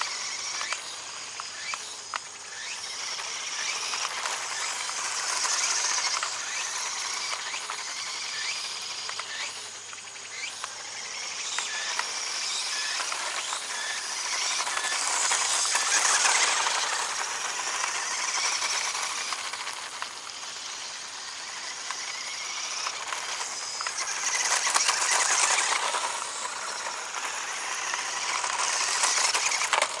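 Toy-grade RC off-road buggy running on asphalt: a steady high hiss of its small electric motor and tyres that swells and fades several times, with scattered small clicks and rattles.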